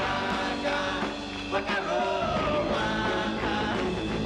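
Live rock band playing loud, steady rock and roll on electric guitars and drums.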